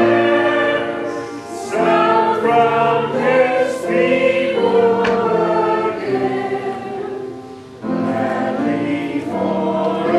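A group of voices singing a hymn together in long held phrases, with short breaks between lines about a second and a half in and near the end.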